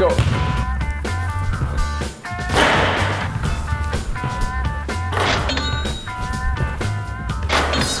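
Background music with held tones over a repeating bass beat, broken by three short rushes of noise about two and a half seconds apart.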